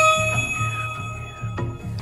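Game-show correct-answer chime: a bright bell-like ding struck once at the start, whose upper notes ring on, over steady pulsing background music.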